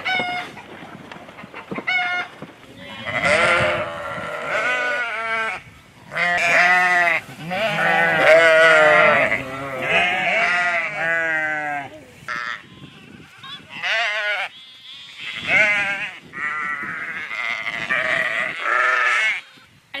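Sheep and goats bleating: a run of quavering bleats, several overlapping in a chorus, with short pauses between.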